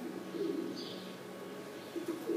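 A pigeon cooing faintly: a short low coo about half a second in, over a steady low hum in the room.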